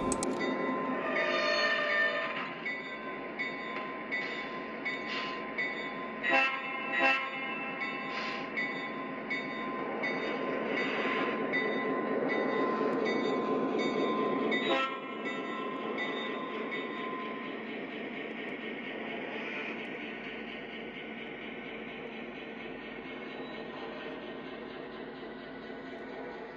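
Model diesel locomotive's electronic sound system running: a steady diesel engine rumble, with horn blasts a few times in the first half, over the train rolling along the track.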